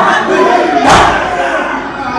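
Crowd of male mourners chanting together, with one loud collective chest-beating strike (matam) about a second in.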